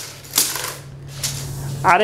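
Rapid rattling clicks of a steel tape measure's blade being reeled back into its case, in two short runs.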